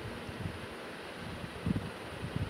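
Steady background hiss from the recording microphone, with a few soft low bumps near the end.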